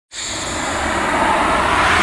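A noisy whoosh-like rush that starts suddenly and swells steadily louder, with a low rumble beneath it: a sound-design riser for an animated logo intro.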